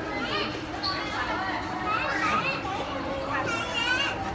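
Children's high-pitched voices talking and calling out over general shopper chatter.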